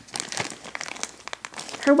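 Plastic packaging crinkling and crackling in irregular bursts as it is handled.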